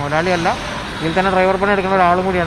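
A man's voice speaking, over a steady background hiss.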